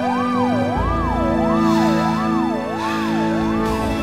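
Ambulance siren wailing quickly up and down in pitch, about three rises every two seconds, over soft background music.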